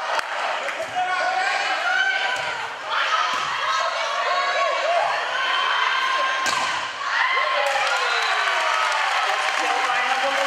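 Volleyball rally in a gym: several sharp smacks of the ball being hit and striking the floor, the loudest about six and a half seconds in, over continual shouting from players and spectators.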